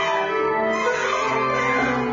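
Improvised music: a tenor saxophone playing amid dense, overlapping piano-like and plucked keyboard tones, several pitches held at once.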